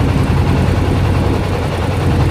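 Boat motor running steadily with a low, even hum, along with the rush of water and air as the boat travels across the lake.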